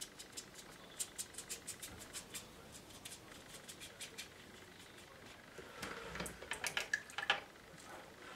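Thin rigger brush flicking and scratching on watercolour paper, painting in grassy detail with quick short strokes: one run of strokes about a second in and another near the end.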